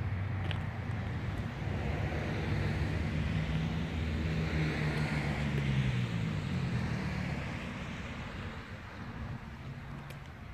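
A motor vehicle's engine running with a low hum. About two thirds of the way through its pitch glides down, and it fades away toward the end.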